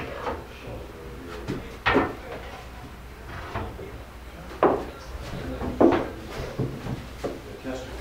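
Wooden parts of a reproduction folding field bed knocking and clattering as the tester rails are fitted onto the bedposts, with sharp wooden knocks about two seconds in and again around five and six seconds in.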